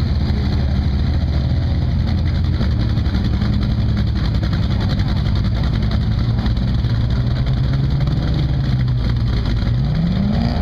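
Competition rock buggy's engine running at low revs as it crawls up a rocky ledge, its pitch rising slightly near the end.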